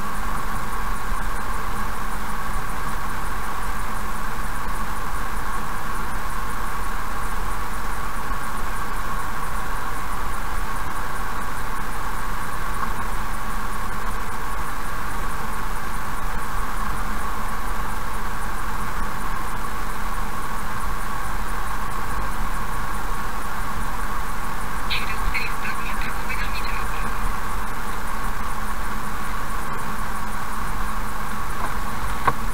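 Steady road and engine noise of a car cruising at about 53 km/h, heard from inside the cabin. About 25 seconds in there is a brief burst of high chirps.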